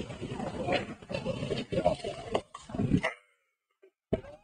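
Loud human shouts and yells, with sharp peaks about two and three seconds in, cutting off suddenly about three seconds in.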